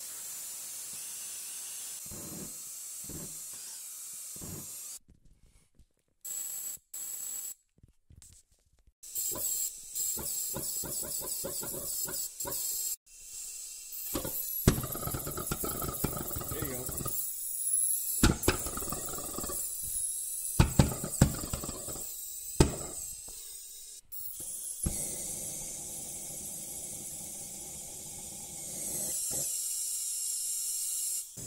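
Homemade copper-pipe pulsejet being test-fired in a series of short clips: hissing gas and compressed air with stretches of rapid sputtering pulses, and a few sharp pops about 18 to 23 seconds in.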